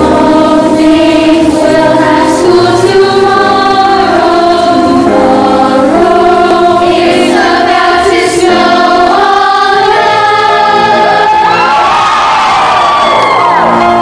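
Youth choir singing together, holding long notes, with voices sliding in pitch near the end.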